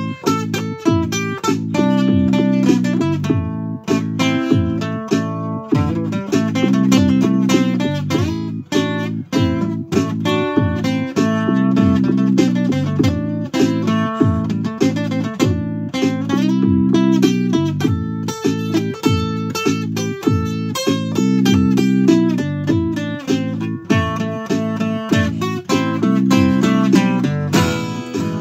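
Acoustic guitar strummed in a steady rhythm through an instrumental passage, with no singing.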